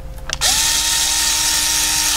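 WORX battery-powered rotary cutter motor spinning up about half a second in, then running at a steady high whine with a hiss from the spinning blade.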